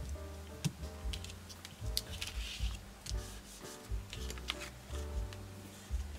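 Background music with pitched notes over a steady bass line. Light clicks and rubbing of card and paper being handled sound over it, with a short papery slide about two seconds in.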